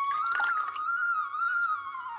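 Background flute music: a held note that begins to move into a slow, wavering melody. A brief splash of water about half a second in, from leaves lifted out of a bowl of rinse water.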